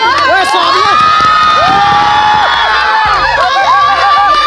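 A group of young women shrieking and cheering together, with several long, high-pitched screams overlapping.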